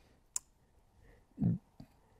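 A pause in a man's speech: one sharp click, then a brief low vocal sound about one and a half seconds in, followed by a faint smaller click.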